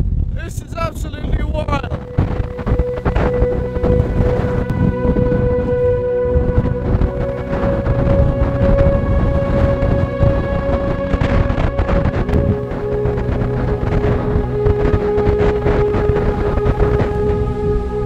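Strong, gusty wind buffeting the microphone in a snowstorm, with a short laugh at the start. Slow background music with long held notes comes in about two seconds in and plays over the wind.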